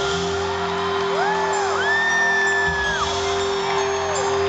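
Live band music recorded from the audience in a large hall: a steady held low note runs underneath, with notes that arc up and down and one long held high note about halfway through.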